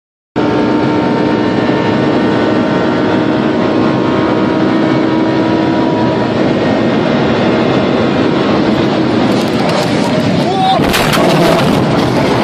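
Sports car cabin at high speed: steady engine and wind noise. Near the end come a series of sharp cracks and bangs as the car crashes.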